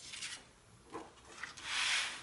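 Sheets of paper being slid and rubbed across a cutting mat by hand: short rustles at first, then one louder, longer slide near the end.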